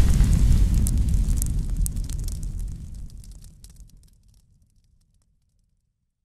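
Intro-logo sound effect: the low rumbling tail of a deep boom with scattered fire-like crackles, dying away about four seconds in to silence.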